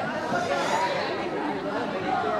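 Overlapping chatter of many voices, several people talking at once with no single clear speaker.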